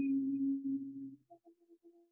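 A woman humming one low held note with her mouth closed, ending a little after a second in; faint broken traces of the tone follow.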